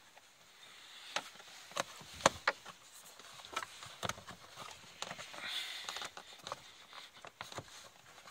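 Hard plastic clicking and knocking as the cabin-filter cover on an Opel Zafira's heater housing is handled and pressed shut, with one sharp click a little over two seconds in.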